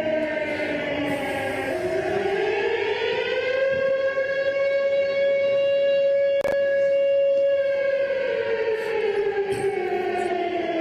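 A siren wailing, sounded at 9:53 to mark the exact moment of the bombing. Its pitch falls, rises to a steady held tone for about four seconds, then falls again.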